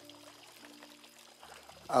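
Courtyard fountain splashing and trickling softly, under faint held notes of background music that change twice.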